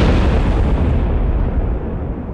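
Explosion sound effect: the rumble of a loud blast, heaviest in the low end, its hiss thinning out about a second in as it dies away.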